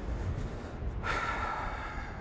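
Wind buffeting the microphone, with a man's heavy breath about a second in that lasts about a second.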